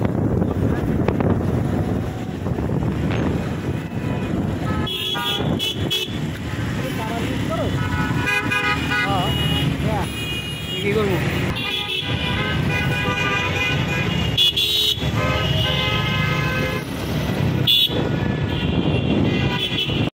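City traffic heard from a moving motorbike: a steady rumble of wind and road noise, with vehicle horns honking again and again from about five seconds in.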